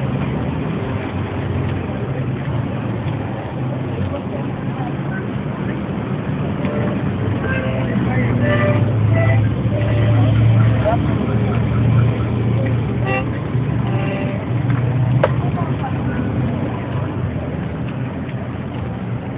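Busy street noise: motor traffic running steadily, with people talking in the background.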